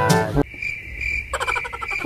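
Speech and music break off about half a second in, leaving a steady, high, cricket-like insect chirping that pulses a few times a second; faint musical tones return near the end.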